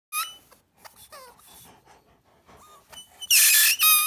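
Squeaker in a Kong squeaky tennis ball being bitten by a Caucasian Shepherd puppy: a short high squeak at the start and a few faint ones, then two long, loud squeaks near the end.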